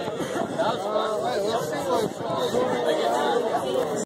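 Several people talking over one another: crowd chatter with no music playing.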